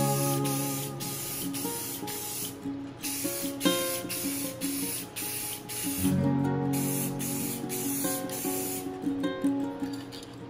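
Aerosol can of Krylon clear sealer spraying in three long bursts, laying a sealing coat over acrylic-painted wooden ornaments. Background guitar music plays underneath.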